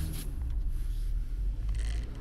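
Low engine and road rumble inside a car's cabin at low speed, with a few faint clicks and a brief rustling scrape near the end.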